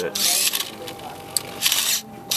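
Automated grapefruit slicer cutting, its motor-driven knife assembly working in the fruit. It makes a burst of rasping mechanical noise at the start and another near the end, with a click in between, over a faint steady whine.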